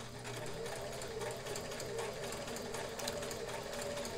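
Kenmore 158.1941 sewing machine (made in Japan, circa 1974–75) running steadily, sewing a pine leaf stitch.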